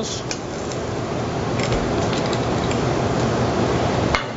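Steady hiss of a commercial kitchen, with the stock pan and wood grill cooking under the ventilation, and a few light clicks as clam shells go into the pan.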